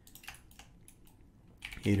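Faint computer keyboard keystrokes and clicks, a few scattered taps, with a man's voice starting near the end.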